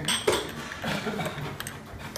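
Breakfast-table clatter: a sharp clink of tableware about a quarter second in, then quieter clinks and faint voices in the background.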